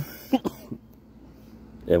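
A man clearing his throat with a couple of short coughs into his shirt about half a second in, then quiet until he starts speaking again near the end.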